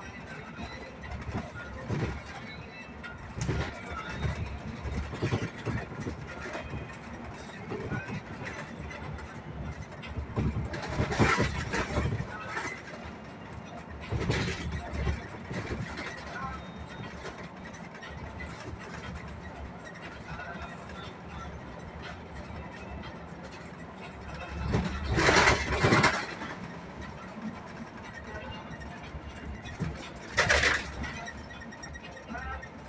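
Cabin noise of a moving bus: engine and road noise running steadily, with indistinct talk and a few louder bursts of noise, the loudest about 25 seconds in.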